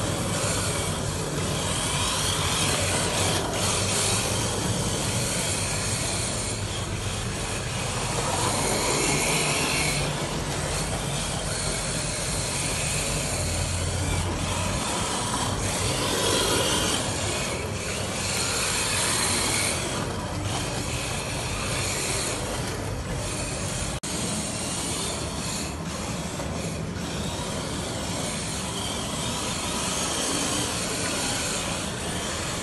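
Radio-controlled drift cars running, their electric motors whining and hard tyres sliding on a smooth stone floor. The sound goes on steadily throughout.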